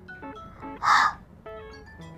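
Soft background music with steady tones. About a second in comes one short, breathy 'hh' exhale: the phonics sound of the letter h.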